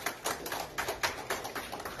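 Quick, irregular light clicking and tapping in a pause between speech.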